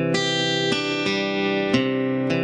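Acoustic guitar playing a C add9 chord as a slow arpeggio: single strings picked one at a time, about four notes in two seconds, each left ringing under the next.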